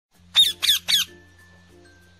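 Three loud, quick squawks within the first second, each bending down in pitch, followed by quiet light background music with a steady bass line and plucked notes.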